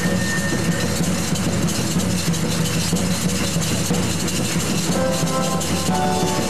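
Live choir-and-band music. A high, flute-like melody line ends about a second in, leaving a steady low hum, and pitched voices or instruments come in again about five seconds in.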